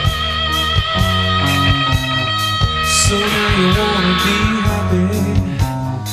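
Electric lead guitar playing an instrumental break over drums and bass in a country-rock song: one long sustained note, then a wavering melodic line from about halfway through, where a cymbal crashes.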